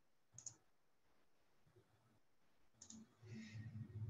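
Near silence on a headset microphone, broken by two faint short clicks, one about half a second in and one near three seconds. Near the end comes a soft breath drawn in before speaking again.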